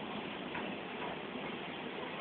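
Steady, even rushing noise on the deck of a moving ship: wind and the ship's wash on the water.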